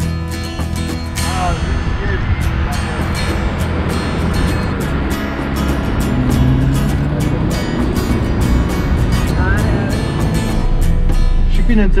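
Background acoustic folk guitar music with a steady strummed beat.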